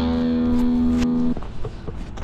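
Electric guitar chord ringing out for about a second, then cut off suddenly, leaving only faint outdoor noise with a few light clicks.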